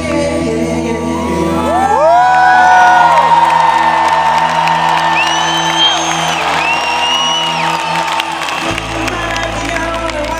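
Live band holding steady chords with the audience whooping and cheering over the music; long high whoops glide up and hold about two seconds in and again around five and six and a half seconds, and the bass shifts near the end.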